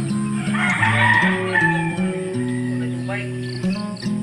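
A rooster crowing once, about half a second in and lasting a little over a second, the loudest sound here, over steady background music.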